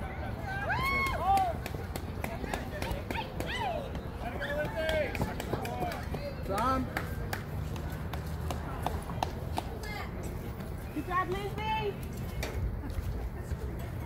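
Players shouting and calling out across an open softball field during a play: a few high, drawn-out yelled calls, the loudest about a second in and again near the end. A steady low rumble runs underneath.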